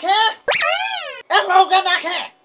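A man's voice speaking Nepali, broken about half a second in by a high, whining cry that rises and then falls.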